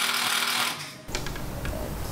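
Cordless impact driver driving a screw into a steel wall stud, stopping about a second in.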